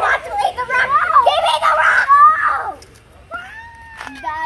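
Young children's excited, high-pitched voices, chattering and squealing for about three seconds, then a quieter sing-song voice near the end.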